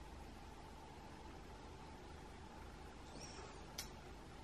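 Quiet room tone: a steady faint hiss and hum. Near the end there is a brief faint high squeak, then a single sharp click.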